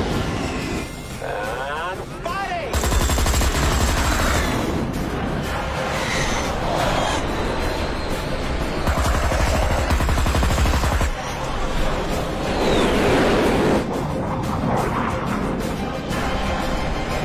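Film soundtrack of a jet dogfight: a long, rapid burst of aircraft cannon fire from about three seconds in until about eleven seconds in, over dramatic music. Near the end a jet sweeps past with a falling whine.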